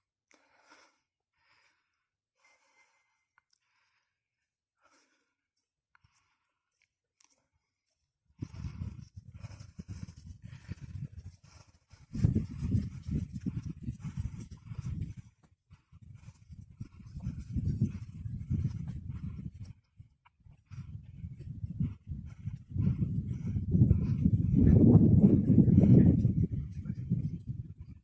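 Wind buffeting the microphone: a low, gusty rumble that starts about eight seconds in, comes and goes in surges of a few seconds, and is loudest near the end.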